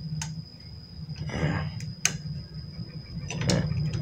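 A few light clicks and rustles of a plastic XT90 connector and its wires being handled in a small bench vise, the sharpest click about two seconds in. A steady low hum and a thin high whine run underneath.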